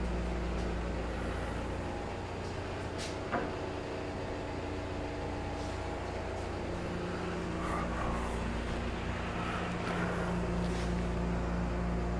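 Steady low mechanical hum of workshop room tone, with a light single knock about three seconds in as a wooden winding stick is set down on the board.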